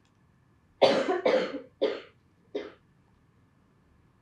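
A person coughing four times in quick succession, each cough weaker than the last.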